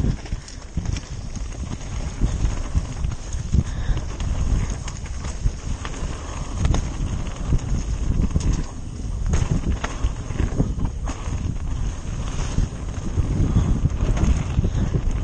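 Mountain bike riding fast down a dirt downhill trail: a steady low rumble of tyres and air over the microphone, broken by frequent sharp rattles and knocks from the bike over bumps.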